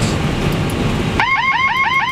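MD-11F cockpit autopilot-disconnect warning: a rapid warbling alarm of about eight short rising chirps a second, starting a little past halfway over the steady rush of flight-deck noise. It signals that the autopilot has been switched off on final approach.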